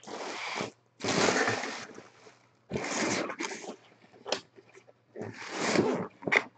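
Plastic packaging crinkling and rustling in about four bursts as hands handle a bagged item in a cardboard box, with one sharp click a little after four seconds.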